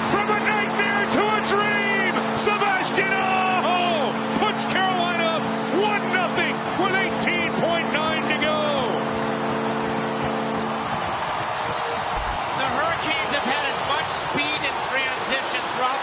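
Hockey arena goal horn sounding a steady, held chord over a cheering, whooping crowd, signalling a home-team goal. The horn cuts off about eleven seconds in and the crowd cheering carries on.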